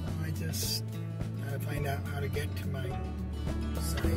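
Background music: a song with a singing voice over a steady bass line.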